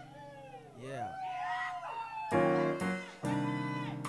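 Live funk-jazz band playing instrumentally: a held keyboard chord under a lead line that slides up and down in pitch, then the full band with drums comes in with loud hits about two seconds in and again about a second later.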